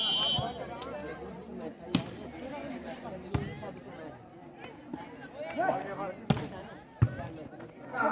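A volleyball is struck by hand in a rally, with sharp smacks about two seconds in, at three and a half seconds, and two loud ones near the end. A short referee's whistle blows right at the start, and spectators' chatter runs underneath.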